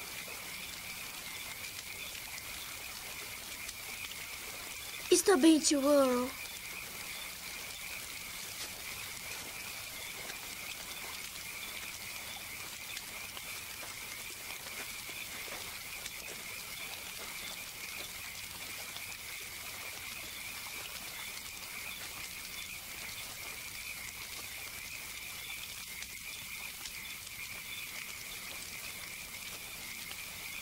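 Steady, high-pitched chorus of frogs calling.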